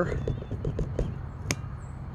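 Handling rumble and a few soft knocks from a phone being carried and turned, with one sharp click about one and a half seconds in.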